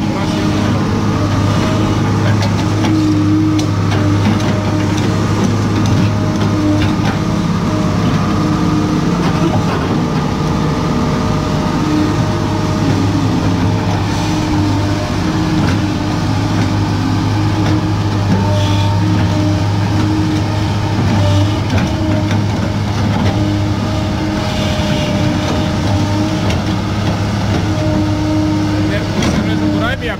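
Caterpillar M318C wheeled excavator's diesel engine running steadily under load as the boom and bucket dig into a pile of soil.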